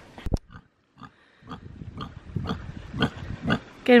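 A pig giving a run of short, repeated grunts, about three or four a second, that starts about a second and a half in. A single sharp click comes shortly after the start, followed by a brief near-silent gap.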